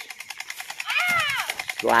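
A child's high-pitched call that rises and falls about a second in, over a fast, even clicking rattle. Speech starts near the end.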